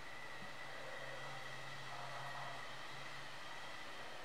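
Quiet, steady room noise: an even hiss with a thin steady high whine and a low hum that fades in and out.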